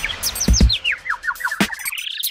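Short electronic jingle introducing a segment, built from bird-like chirps that fall in pitch one after another. Low thumps come about half a second in, and a rising sweep builds near the end.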